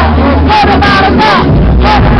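Loud live hip-hop performance through a club PA, recorded overloaded: a heavy bass beat with a woman's voice on the microphone gliding over it, and crowd voices mixed in. The deepest bass drops out briefly past the middle, then comes back.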